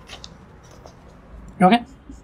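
Felt-tip marker scratching faintly on a whiteboard as a curve is drawn, with one short wordless vocal sound, a brief hum, about one and a half seconds in, the loudest thing heard.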